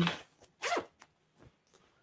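A short rasp of nylon jacket fabric and its furry pile lining being pulled and handled close to the microphone, followed by a small click and a few faint ticks.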